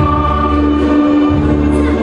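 Background music with singing on long held notes over a bass line; the bass drops out briefly about a second in.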